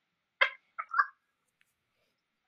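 A person's brief laugh: three short bursts about half a second to a second in.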